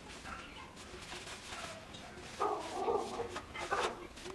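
A dog barking, two short bouts about two and a half and nearly four seconds in.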